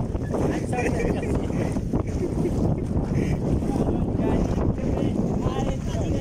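Steady, heavy wind noise on the microphone, with people's voices talking and calling indistinctly over it.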